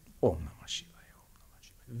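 A man's short breathy vocal sound, falling in pitch, like a sigh or a half-voiced murmur, followed by a brief soft hiss.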